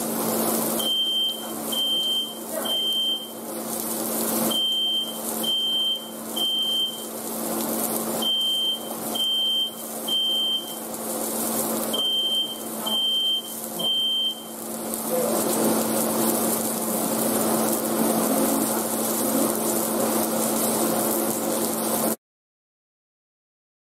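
Home smoke alarm going off, set off by smoke from the grilling meat: four rounds of three high beeps, which stop about two-thirds of the way through. Meat sizzles on the grill pan throughout, with a steady low hum beneath.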